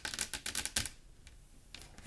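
A quick clatter of small clicks from card decks being handled and moved on a wooden tabletop. It lasts about a second, then goes quiet.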